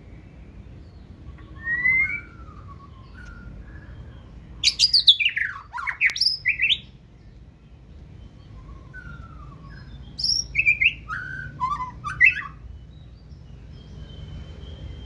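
White-rumped shama singing its wild-type song in three bursts of varied whistled phrases: short phrases about two seconds in, a loud run of quick up-and-down whistles in the middle, and more clipped phrases near the end.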